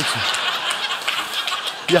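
A roomful of people laughing together, a steady wash of laughter that eases off slightly near the end.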